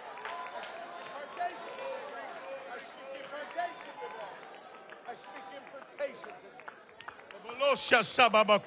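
A congregation praying aloud all at once, many overlapping voices blending into a murmur. Near the end one man's voice rises loudly above them.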